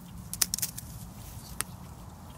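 A few sharp clicks and crackles close to the microphone: a quick cluster about half a second in and a single one after about a second and a half, over a low steady background.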